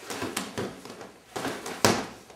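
A few soft knocks, then a sharp slap near the end: hands striking and pushing a free-standing Century Powerline training bag and the padded Strongarm arm attached to it.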